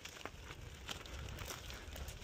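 Faint crunching and rustling on a dry, leaf-strewn dirt trail, with a low rumble and a couple of faint clicks.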